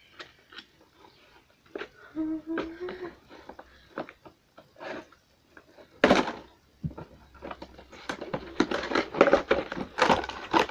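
Cardboard toy box being handled and opened, with scattered taps, scrapes and rustles of the box and its packaging. A sharp knock comes about six seconds in, then busier crackling and rustling near the end.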